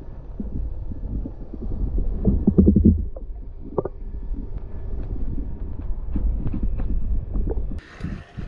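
Muffled underwater sound picked up by a submerged camera: a steady low rumble of water against the housing, with scattered ticks and knocks and a louder run of thumps a little over two seconds in.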